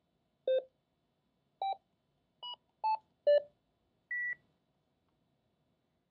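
Key beeps from a Yaesu mobile transceiver as a frequency is entered on its microphone keypad. There are five short beeps, each at a different pitch, then one longer, higher beep about four seconds in.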